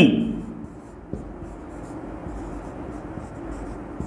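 Marker pen writing on a whiteboard: faint, scattered scratching strokes, with a single click about a second in.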